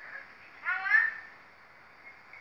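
A young child's single short, high-pitched squeal that rises in pitch, about half a second in.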